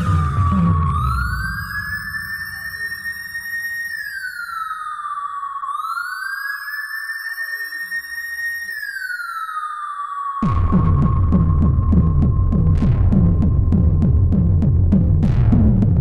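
Hardcore gabber track: a siren-like synth tone swoops up and down over a beatless breakdown. About ten seconds in, the distorted gabber kick drum comes back in with a fast steady beat.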